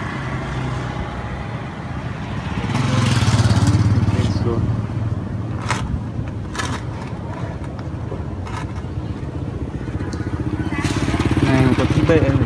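A motor vehicle engine running steadily, swelling louder about three seconds in and again near the end, with a few sharp clicks in between.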